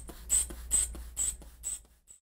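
Blood pressure cuff being pumped up by hand: about five short hissing squeezes of the bulb, a little over two a second, growing weaker before the sound cuts off.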